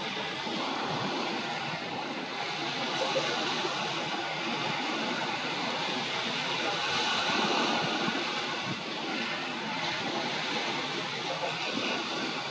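Steady rushing noise with no distinct bird calls.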